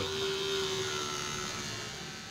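Small DC motor of a homemade water pump running with a steady whine that slowly grows fainter.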